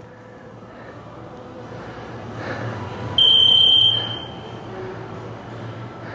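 A single high-pitched electronic beep about three seconds in, strong for under a second and then fading away.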